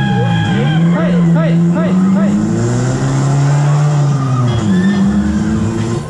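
Sound effects over a fairground ride's loudspeakers: sliding, revving-like tones. In the first two seconds there is a quick run of bouncing chirps, about four a second.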